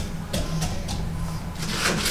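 Chopped apple pieces dropped by hand into a glass pitcher of apple cider sangria, giving a few light knocks, followed by a brief rustle near the end.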